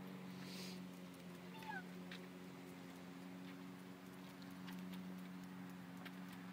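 Distant gas lawn mower engine running with a steady low hum. A short high chirp cuts in about one and a half seconds in.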